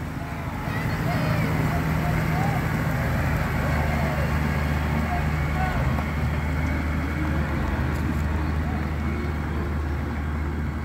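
Large farm tractor's diesel engine running steadily as it drives past, a low, even hum. Faint voices can be heard under it.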